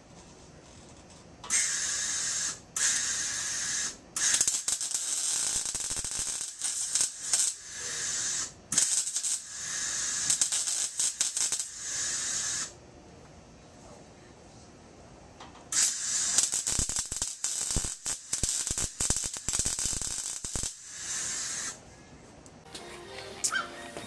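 A wire brush scrubbing bare steel on a car's bumper reinforcement and frame rail, cleaning the metal before welding. It comes in scratchy bursts of one to several seconds, with a pause about halfway through.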